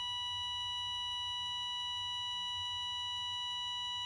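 A single steady electronic beep tone, held at one pitch without a break, over a faint low hum.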